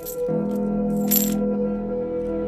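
Coins dropping and clinking, with a short burst of clinks about a second in, over background music of sustained notes that shifts to a new, lower chord shortly after the start.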